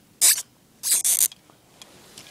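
Two short scraping, rustling bursts of handling noise, the second longer than the first, as the doll and the handheld recording device are moved about.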